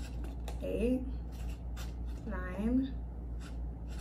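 Permanent marker scratching in short strokes on a foam cup as numbers are written around its rim. A woman's voice speaks two short words between the strokes.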